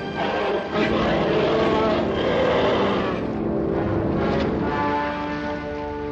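Orchestral film score playing, settling into a sustained held chord about five seconds in.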